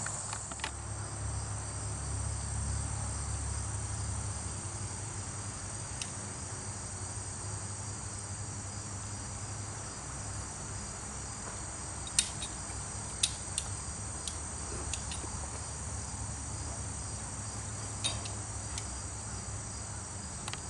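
Steady high-pitched insect chorus, with a low rumble in the first few seconds and a few short sharp clicks later on.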